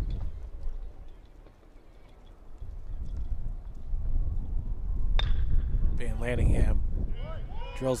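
Wind rumbling on the microphone, with one sharp ping of a metal bat hitting the ball about five seconds in, then a short burst of voice.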